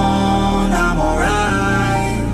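Background music: a song with held, changing notes over a steady bass.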